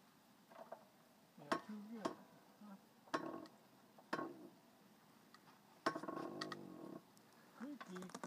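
Manual hydraulic log splitter worked by hand: a series of sharp metallic clicks and clinks from the pump levers, about one a second with a gap in the middle, as the ram pushes into an already split log.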